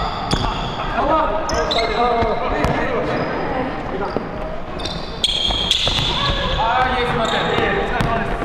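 Basketballs bouncing on a hardwood gym floor, with short high squeaks of sneakers on the boards and players' voices calling out.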